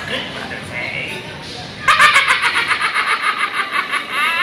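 A person laughing in a fast, high-pitched run of "ha"s, starting about two seconds in, after a few faint voice sounds.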